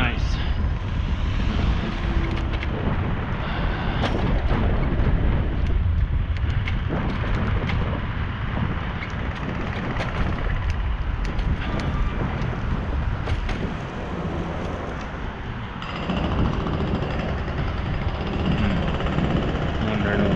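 Wind rushing over the microphone of a camera riding along on a moving bicycle, a heavy low rumble with road noise and scattered short clicks and knocks.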